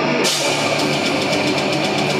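Death metal band playing live at full volume: heavily distorted guitars and bass with fast drumming and cymbals. The band crashes back in right at the start after a short break.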